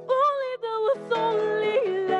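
A woman singing live into a microphone over instrumental accompaniment, in short phrases with held notes that slide in pitch.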